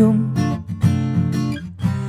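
Acoustic guitar strummed in chords between sung lines, several strokes in a loose rhythm. A sung note fades out just at the start.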